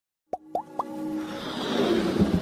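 Animated logo intro sound effects: three quick rising bloops, the first about a third of a second in, followed by a noise swell that builds steadily louder toward the end.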